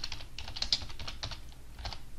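Typing on a computer keyboard: a quick run of keystrokes, then a last keystroke near the end.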